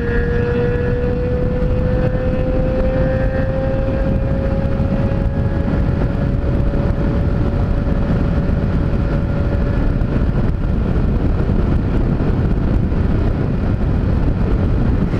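Honda CG single-cylinder motorcycle engine running at cruising speed under a heavy, steady rush of wind and road noise. A clear engine whine creeps slowly up in pitch over the first ten seconds, then fades into the rush.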